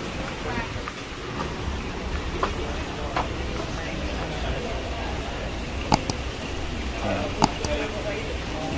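Indistinct background voices over steady shop room noise with a low hum, and a few sharp clicks in the last couple of seconds.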